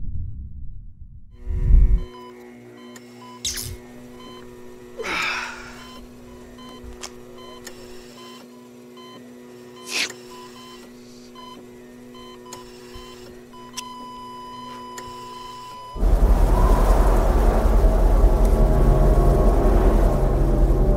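Cinematic sound effects rather than a song: a low steady hum with faint repeating electronic beeps, a whoosh about five seconds in and a few sharp clicks, then a loud low rumble starting suddenly near the end.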